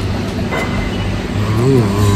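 A steady low rumble, with a voice speaking briefly in the second half.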